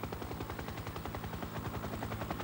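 Helicopter rotor chop: a fast, even pulse of about thirteen beats a second over a low, steady hum.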